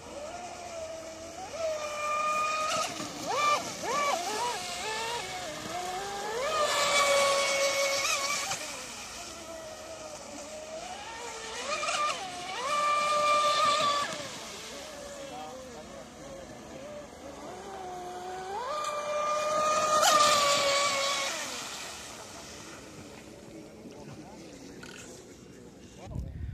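Radio-controlled speedboat's Leopard 4074 2200 kV brushless motor, run on 6S, whining at high revs, its pitch gliding up and down with the throttle. The whine swells loudly three times as the boat makes fast passes, then settles to a quieter, steadier tone near the end.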